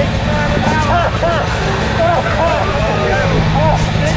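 Excited voices whooping and exclaiming in short rising-and-falling calls close to the microphone, over a steady low rumble.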